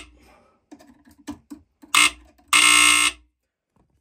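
Smoke alarm sounding: a short loud beep about two seconds in, then a longer beep of nearly a second, after a few light clicks.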